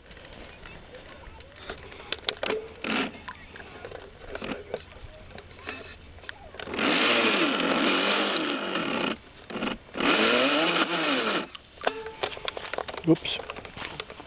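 Radio-controlled speedboat's motor run in two bursts of about two seconds each, its whine sweeping up and down in pitch as the boat drives in the shallows and runs aground on the shore.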